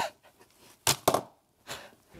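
Two short knocks a fraction of a second apart about a second in, then a fainter one near the end, against a quiet room.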